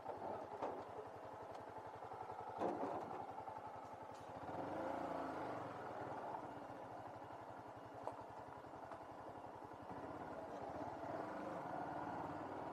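Motorcycle engine running at low speed while the bike rolls slowly, with a single knock about two and a half seconds in and the engine rising briefly as it pulls away about four seconds in.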